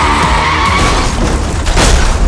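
Car tyres screeching in a skid, with dramatic music underneath, then a loud hit near the end.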